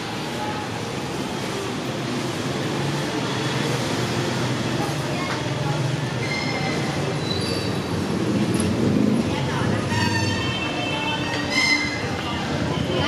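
Busy street ambience: a steady rumble of traffic and motorbike engines with people talking, voices standing out near the end.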